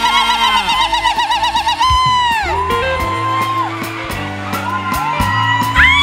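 Live church band music: a high lead melody that glides up into long held notes with vibrato and slides back down, over steady bass notes, with light percussion clicks in the second half.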